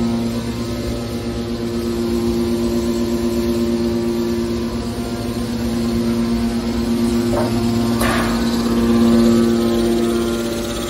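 Hydraulic scrap metal baler's power unit, an electric motor driving a hydraulic pump, running with a steady loud hum, with a brief noisy burst about eight seconds in.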